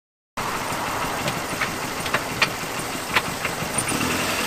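Toyota Tercel's engine idling with a steady, noisy hum, with several sharp, irregular clicks over it. The sound cuts in abruptly just after the start.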